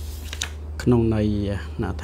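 A man's voice starts speaking about a second in, over a steady low hum. Just before it come a couple of short papery clicks from a hand handling the pages of a large book.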